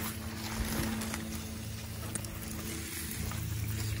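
Small hand-held trigger sprayer spritzing copper fungicide onto a palm: a few faint, short hissing sprays over a steady low hum.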